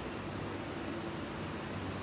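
Steady background hiss with a low hum underneath, with no distinct events.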